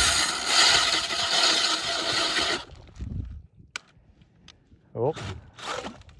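A DeWalt drill spinning an ice auger, grinding through lake ice as it throws up chips. It cuts off suddenly about two and a half seconds in, once the auger has broken through to water.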